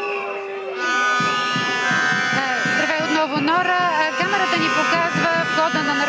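Singing, with long held notes that slide up and down in pitch.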